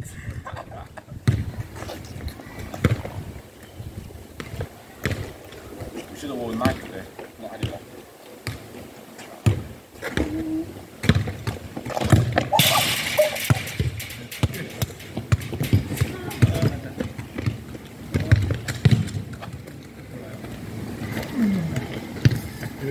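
A football kicked at a small goal on an outdoor court. A loud, rattling burst lasts about a second as the ball reaches the goal, among scattered knocks of feet and ball on tarmac and faint voices.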